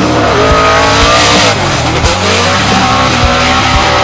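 Ford Mustang RTR Spec 5-D drift car's Roush Yates V8 revving hard through a drift, its pitch climbing about a second in, dropping, then climbing again, with tyres squealing under the slide.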